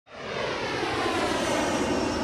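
Airliner flying over, its engine noise fading in quickly and then holding steady with a faint high whine.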